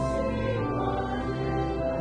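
Church hymn music: held chords that move from note to note every half second or so, with voices singing.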